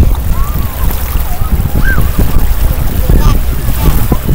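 Heavy wind buffeting the microphone as a loud, steady low rumble, over small lake waves lapping at the shore. Faint distant voices call out now and then.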